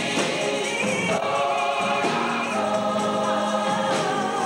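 Gospel choir singing, the voices settling into long held notes about a second in, with one high line wavering in vibrato above them.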